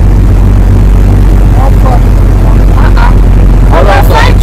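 A truck's engine running with a loud, steady low drone, heard from on board the truck, with faint voices over it.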